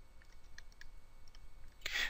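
Faint, scattered light clicks of a stylus tapping and writing on a tablet screen.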